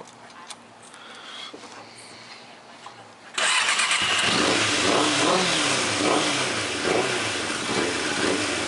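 1992 Suzuki Katana 600's inline-four engine firing up suddenly a little over three seconds in, then running with revs rising and falling. It is the bike's first run after years off the road and a carburettor rebuild, started off a jump from a car battery.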